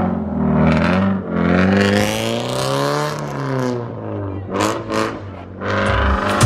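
Scion FR-S's 2.0-litre flat-four, breathing through an aftermarket DC Sports exhaust, pulling away under throttle. The engine note rises for about two seconds, then falls away.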